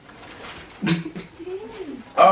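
A person's voice making a drawn-out, wavering vocal sound that starts about a second in, among the group's laughter.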